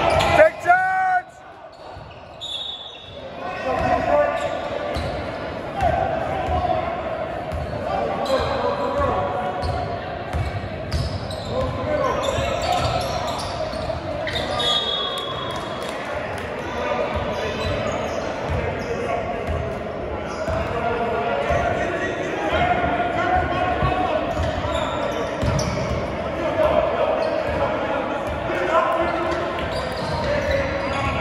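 Basketball game sounds in a gym: a ball dribbling on the hardwood floor in repeated thumps, occasional short high sneaker squeaks, and players and spectators talking and shouting. A loud shout comes right at the start and breaks off suddenly about a second in.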